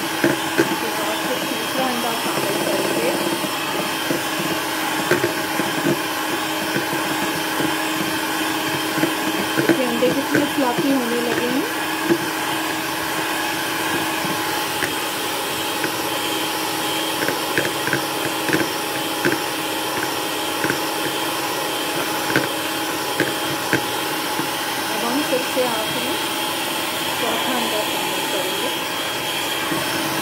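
Electric hand mixer running steadily, its twin beaters whisking eggs into a froth in a plastic bowl, with a constant whine. Now and then the beaters click against the side of the bowl.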